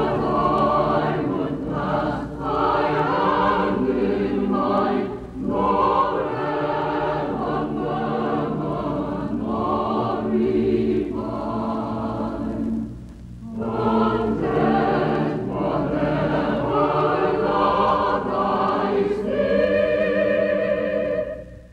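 Choral music: a choir singing long held phrases, with a short pause about thirteen seconds in.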